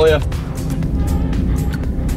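Steady low engine and road drone inside the cabin of an Audi S1, with music playing over it.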